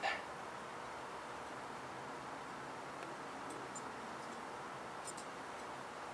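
Quiet, steady background hiss with no clear source, with a few faint ticks in the second half.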